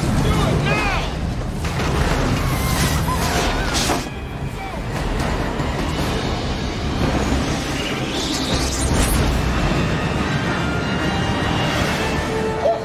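Movie soundtrack of an airliner cabin decompressing through a shot-out window: a continuous roar of rushing air with whooshing surges, people screaming and shouting near the start, and dramatic music underneath.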